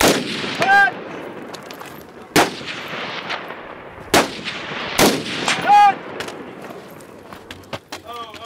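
Four single shots from a 5.56 mm AR-15 carbine, spaced unevenly over about five seconds. The first and last shots are each followed, about three-quarters of a second later, by the ringing clang of a steel target being hit at 100 to 140 yards.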